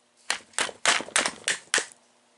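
A metal rod or driver tapped about seven times in a second and a half in quick sharp knocks against a model-car engine, trying to drive out a cylinder sleeve that is seized in place.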